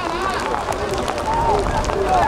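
Several voices calling and shouting across an outdoor football pitch, over steady background noise.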